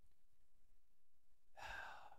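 Near silence, then a man's breathy sigh into the microphone about one and a half seconds in.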